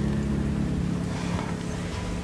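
A steady low hum, even throughout, with no knocks or other events.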